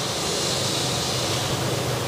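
Steady rushing noise with a faint low hum beneath it.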